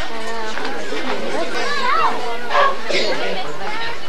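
Several people talking over one another in indistinct chatter, with no clear words.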